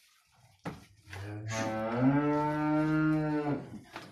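Two-year-old pied Simmental-type bull lowing: one long low moo of about two and a half seconds that starts about a second in, steps up in pitch halfway through and holds. A brief knock comes just before it.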